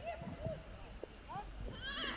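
Faint, distant shouts and calls of young footballers on the pitch, a few short cries over a low outdoor rumble.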